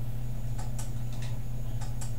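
A homemade flywheel generator rig, a bicycle wheel kept spinning by a motor switched through a timing relay, running with a steady low hum. Sharp clicks come every half second to second, often in pairs about 0.2 s apart, which fits the relay switching the drive motor on for 0.2 s at a time.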